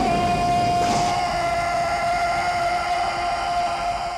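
A single sustained note with overtones from the film's soundtrack, held steady without bending. A brighter, higher layer joins about a second in.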